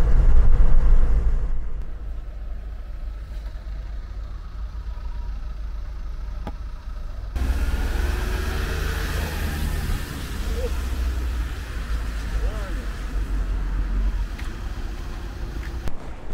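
Steady low engine and road rumble inside a Ford Transit Custom campervan's cab while driving, loudest for the first second or two and then quieter. About seven seconds in it cuts abruptly to outdoor vehicle rumble with a steady hiss.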